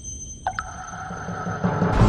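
Electronic intro music: sustained high synthesized tones over a low drone, with a lower tone sliding in about half a second in, growing louder throughout.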